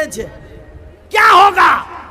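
A man shouting one word ("kya") at full voice into a microphone about a second in, lasting under a second with a pitch that bends down and up; it is the loudest thing here, after a short spoken word at the start.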